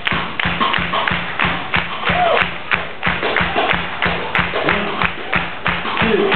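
Ska band playing live, driven by a fast, steady beat of about five hits a second, with a voice coming through now and then. The sound is dull, with no treble at all.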